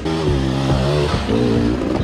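Dirt bike engine revving up and down, its pitch rising and falling, with background music playing underneath.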